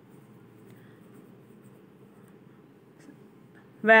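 Faint scraping and shuffling of a wooden spatula stirring soya chunks in masala around a non-stick pan, with a couple of light ticks near the end. A woman starts speaking just before the end.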